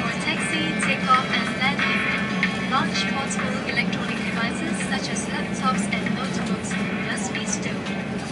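Safety announcement narration with soft background music, over the steady low hum of an Airbus A350 cabin.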